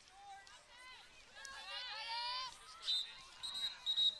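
Faint distant voices calling out on the field, then a referee's whistle blown about three seconds in, a short toot and then a longer blast, starting the lacrosse draw.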